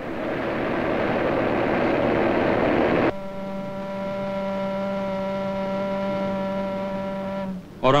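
Steelworks furnace noise: a dense, steady roar for about three seconds. It cuts suddenly to a long, steady, low-pitched blast of a pit-head whistle, rich in overtones, held for about four and a half seconds before stopping. With miners filing past the pit, the whistle marks a shift change.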